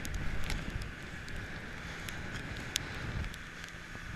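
Strong wind rumbling on the microphone aboard an inflatable motor boat running across choppy water, with scattered sharp ticks.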